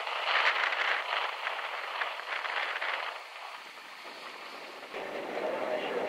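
Surf breaking on a rock breakwater: a steady hiss of waves and spray, which fades about three and a half seconds in. A faint low hum comes in near the end.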